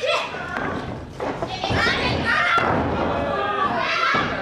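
High-pitched voices shouting and yelling during a wrestling bout, with thuds of bodies hitting the ring canvas, echoing in a large hall.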